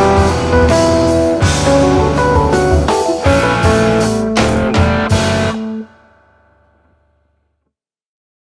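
Instrumental jazz-rock fusion band of electric guitar, keyboards, bass and drum kit playing the closing bars of a tune, with a run of hard accented hits about four to five seconds in. The band stops together about six seconds in, and the last chord rings out for about a second.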